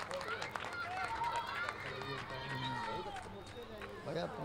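Faint, indistinct talk of several men away from the microphone, with no clear words.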